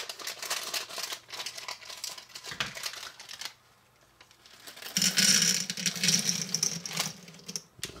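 A small plastic bag crinkling as it is handled, then Reese's Pieces candies poured out of it into a small bowl, a dense clattering that starts about five seconds in and stops shortly before the end.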